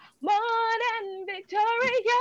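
A woman singing a gospel praise song solo and unaccompanied, holding notes with vibrato in two phrases with a short break between them.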